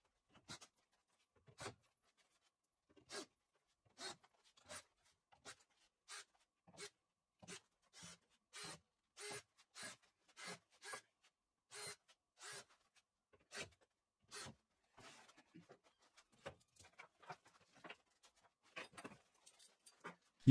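Faint, short scratchy rubbing sounds in a loose, regular series, roughly one or two a second, thinning into smaller scattered scrapes after about fifteen seconds.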